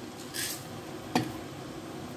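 Kitchen handling sounds: a short rustling hiss, then a single sharp knock a little over a second in, over a low steady background.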